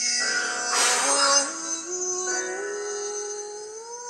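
Male pop-ballad singer's voice with accompaniment, played back over speakers: a held note climbs in steps, with a short noisy swell about a second in.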